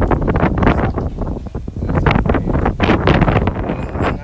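Wind buffeting the microphone: a loud, gusty rumble that rises and falls.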